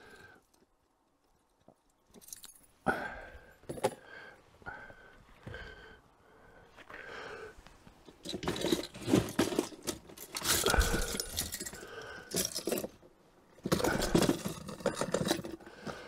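Rubber pike lures rigged with metal treble hooks being handled and laid out on a bench: irregular rustling and scraping with light metal jingling of the hooks, starting after a couple of quiet seconds.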